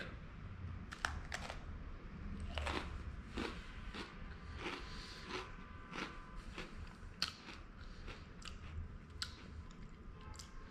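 A person biting into and chewing an Oreo sandwich cookie close to the microphone: irregular crisp crunches, about one or two a second. The wafer is a crunchy, crispier one.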